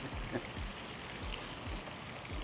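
Insects trilling outdoors: a steady, high, fast and evenly pulsing buzz.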